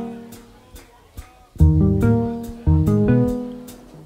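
Live band playing a song intro: chords struck twice about a second apart and left to fade, over a steady high ticking rhythm.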